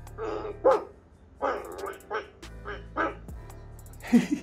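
A Living AI EMO desktop robot playing dog-bark sounds through its small speaker: a series of about six short barks, in answer to the spoken question "what sound does a dog make".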